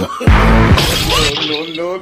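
A sudden loud crash with a shattering noise about a quarter second in, dying away within a second, over music and a voice crying out.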